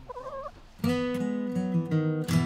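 A hen gives one short, wavering call, then strummed acoustic guitar music starts just under a second in and takes over loudly.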